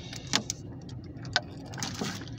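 A man drinking from a large plastic jug of distilled water: a few short gulp sounds spread over two seconds, over a low steady hum.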